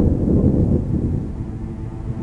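A deep roll of thunder, loudest in the first second and fading, while low bowed strings come in softly near the end.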